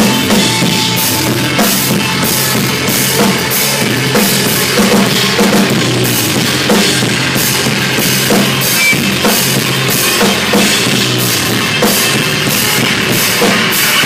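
A rock band playing loud, heavy rock live: a drum kit with regular cymbal and drum hits over a thick, sustained bass and guitar tone.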